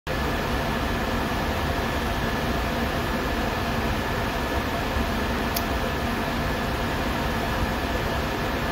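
Steady mechanical hum and hiss, like a ventilation fan or air handler running, with a faint constant whine over it. A single short click comes about five and a half seconds in.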